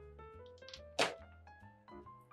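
Background music with held plucked notes, and a single thump about halfway through as a ball of cocoa bread dough is pressed down against the wooden board while being kneaded.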